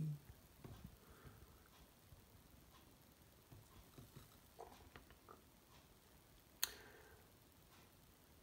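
Near silence: room tone with a few faint scattered ticks and one sharper click about two-thirds of the way through.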